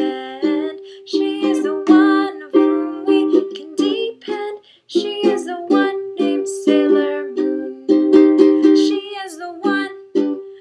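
Ukulele strummed in a steady rhythm, about two strums a second, with a woman singing along; the playing breaks off briefly about halfway through.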